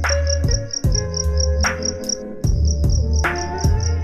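Trap / boom-bap hip-hop instrumental beat: deep sustained bass notes, a hard drum hit about every second and a half, and a fast steady run of high chirping ticks, about five a second. A held melodic note slides upward near the end.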